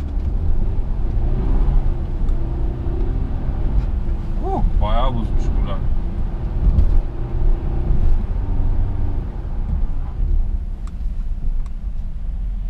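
Mercedes car's engine and tyre rumble heard from inside the cabin while driving, the engine note rising and falling with the throttle. A short voice sound comes about five seconds in.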